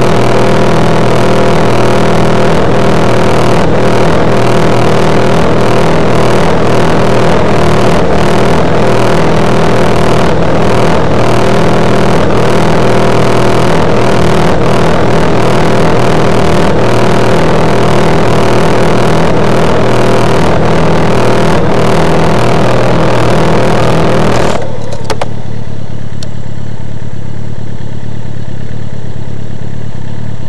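Motorcycle engine running steadily under loud rushing wind noise, as heard from a moving bike. About 25 seconds in, the rushing noise cuts away abruptly, leaving the lower engine hum on its own.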